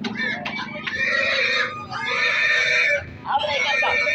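Domestic pig squealing loudly while being gripped and handled: about four long squeals in a row, each up to about a second long, with short gaps between them.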